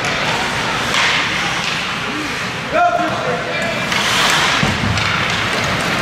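Ice hockey game sound in an indoor rink: skates scraping the ice and sticks knocking, with players and spectators calling out. One louder call comes about three seconds in.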